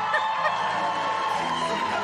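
Show choir singing with musical backing, one long note rising and then held, fading shortly before the end.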